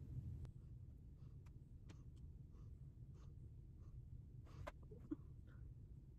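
Near silence: low room hum with faint scattered ticks and soft scratchy strokes of a makeup brush working eyeshadow across the eyelid, a little busier about four and a half seconds in.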